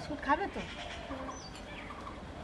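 A goat bleating in short calls, twice: a couple of brief rising calls near the start and a short steady one a little past a second in, fainter than the louder bleats just around it.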